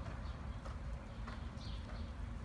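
A horse's hooves striking soft arena dirt, a few muffled hoofbeats about every half second over a steady low rumble.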